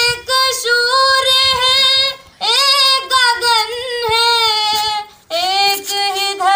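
A woman singing solo in long phrases with sliding, bending notes, pausing briefly for breath about two seconds in and again about five seconds in.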